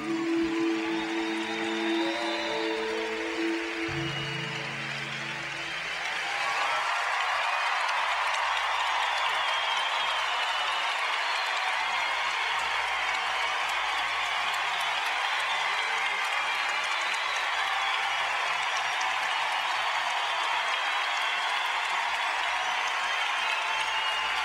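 The last few seconds of the slow skating music, a ballad, fade out over applause. From about six seconds in, a large arena crowd applauds steadily until the end.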